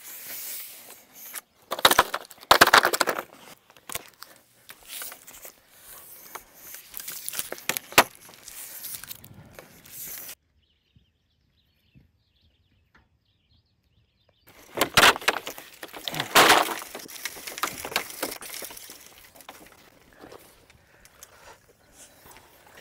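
A 100-foot roll of inch-and-a-quarter black polyethylene water line being unrolled and dragged over dirt and grass, heard as irregular noisy bursts and knocks. There are a few seconds of dead silence midway.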